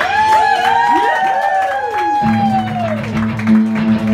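Live rock band: electric guitar notes gliding up and down in pitch, joined about two seconds in by a held low electric bass note.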